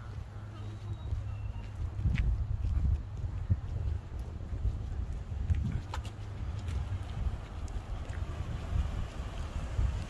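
Wind buffeting a phone microphone outdoors, a low rumble that rises and falls, with a few faint clicks.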